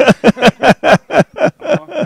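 A man laughing heartily in a string of about nine short bursts, each falling in pitch, loudest at first and fading.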